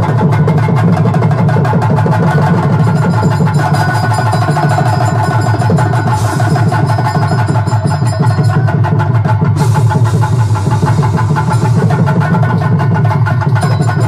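Live stage-drama band music: hand drums beating a fast, busy rhythm over a steady sustained melody, loud and unbroken.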